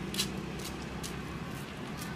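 Faint outdoor background noise with a low steady hum and a few light ticks, about two a second.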